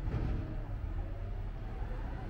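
Wind buffeting the microphone outdoors, an uneven low rumble.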